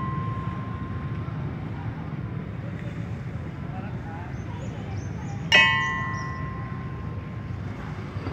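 A single note struck on a gamelan-style bar metallophone about five and a half seconds in, ringing out for about a second and a half over a steady low background.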